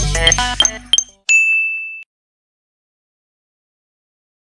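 Game-show style background music of bright chiming notes, cut off about a second in, then a single short, high ding sound effect marking the end of the search round.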